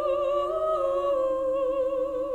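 Two female classical voices singing in harmony: the upper voice holds a long note with wide vibrato while the lower part steps slowly downward.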